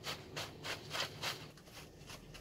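Paper lottery tickets being shaken in a jute sack: a faint, rhythmic rustling of about three shakes a second that dies away near the end.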